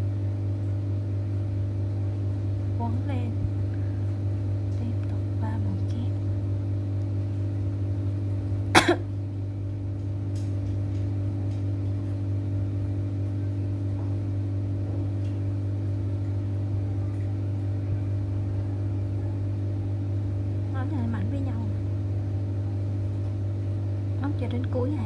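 A steady low hum with several fixed tones, like a running machine or appliance, under faint distant voices. One sharp click about nine seconds in.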